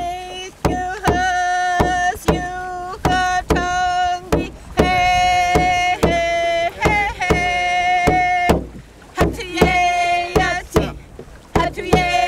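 Tlingit song sung in long held notes, with short breaks between phrases, over a steady struck beat of sharp knocks about one and a half times a second.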